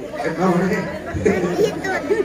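Speech only: voices talking in a large hall, with overlapping chatter.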